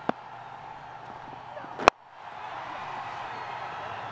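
Cricket bat striking the ball with one sharp, loud crack about two seconds in, over steady stadium crowd noise that swells after the shot.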